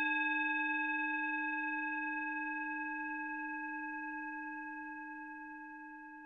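The long ringing tail of a single struck bell-like chime, fading slowly and steadily: one strong low tone with a few fainter, higher overtones.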